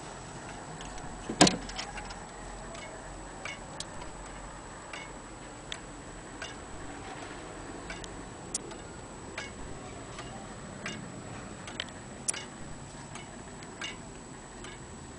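Antique Vienna wall clock ticking steadily, a little under one and a half ticks a second, as its pendulum swings. A sharp, much louder knock comes about a second and a half in.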